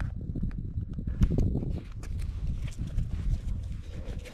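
Single-cylinder four-stroke engine of a Yamaha Raptor 700R ATV idling with a fast, even low thumping, with a louder surge about a second in.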